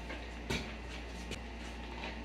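Steady low room hum with a single light click about half a second in and a fainter tick a little later.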